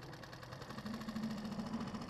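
Small boat motor running with a steady, buzzing hum that grows stronger about two-thirds of a second in as the boat is manoeuvred.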